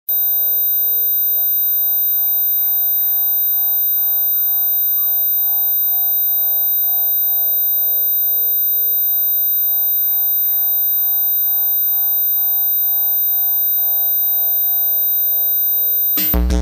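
Electronic music: a dark synthesizer drone of several steady high tones over a fast, repeating pulsing texture. It starts suddenly, holds at an even level and cuts off abruptly at the end.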